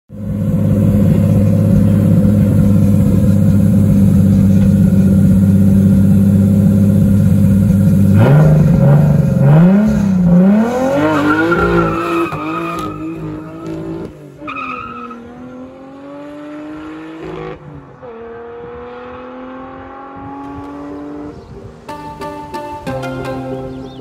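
Toyota Hilux's swapped-in 2JZ-GTE turbocharged inline-six held at steady high revs, then launching away with wheelspin and tyre smoke, the revs wavering and climbing. The pitch drops at gear changes as the engine note fades into the distance.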